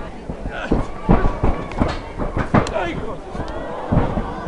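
A series of sharp slaps and thuds from wrestlers grappling and striking in the ring, about half a dozen in the first three seconds, over crowd voices.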